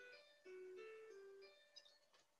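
A faint chiming melody: a short phrase of clear bell-like notes that changes pitch from note to note.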